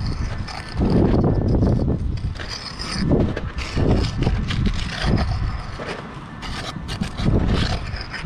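Steel pointing trowel (tuck pointer) scraping and pressing sand-and-cement mortar into a brick bed joint in irregular strokes, with gloved hands rubbing close to the microphone.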